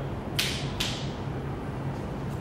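Powder hose being pushed onto the barb of a powder coating gun, squeaking twice, about half a second apart, as the tubing rubs over the fitting.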